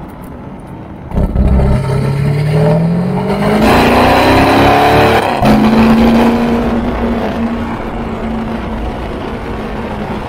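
Lamborghini Urus's twin-turbo V8 through an IPE full exhaust system with electric valves, heard at the tailpipe while driving. After about a second of lower sound it accelerates with a steadily rising note, breaks off a little past halfway as in a gear change, then settles into a steadier note that sags slowly.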